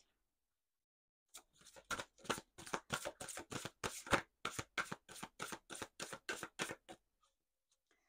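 A deck of oracle cards being shuffled by hand: a quick run of soft card slaps and riffles, about four a second, starting a little over a second in and stopping about a second before the end.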